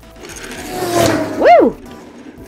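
A rising whoosh, then a short swooping 'whoo' that rises and falls in pitch, as a small toy motorbike is sent rolling across the table.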